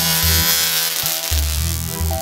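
Loud, harsh electric buzz from a home-built electrical gadget mounted on a long PVC pole, switched on and held on, over background music with a thumping beat.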